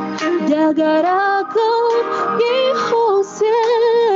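A woman singing a melody with vibrato over musical accompaniment, with a short break between phrases about three seconds in.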